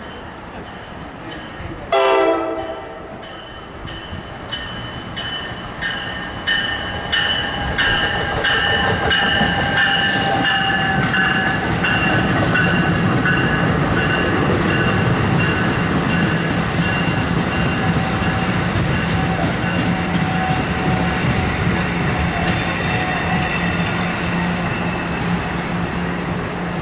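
NJ Transit Multilevel commuter train coming through the station: a short horn blast about two seconds in, then a run of evenly spaced ringing strikes, then the steady running noise of the passing cars with a low hum and held high tones.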